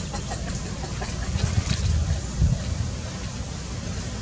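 Low, uneven outdoor rumble that swells briefly in the middle, with faint scattered ticks and rustles above it.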